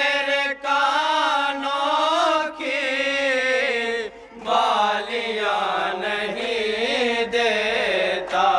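Male voices chanting a noha, an unaccompanied Urdu lament, into microphones, in long wavering held phrases with short breaks for breath.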